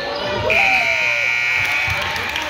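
Gym scoreboard buzzer sounding once, one steady high tone starting about half a second in and lasting about a second and a half, over shouting voices.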